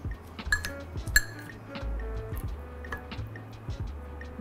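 Background music with a steady low bass, over wooden chopsticks clicking against a ceramic bowl as noodles are tossed in sauce; two sharp clicks stand out in the first second or so.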